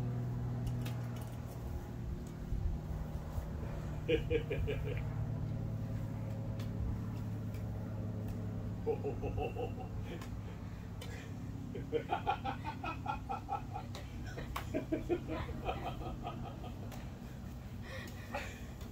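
Indistinct voices in several short stretches over a steady low hum.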